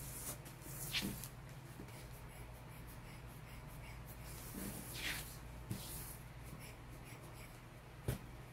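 Short puffs of air from a hand-squeezed rubber air blower bulb, blowing across wet alcohol ink on paper. There are two main puffs, about a second in and about five seconds in, over a low steady hum.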